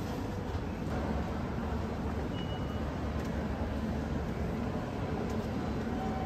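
Steady din of a crowded train-station concourse, many commuters walking, over a low rumble. A brief high beep sounds about two and a half seconds in.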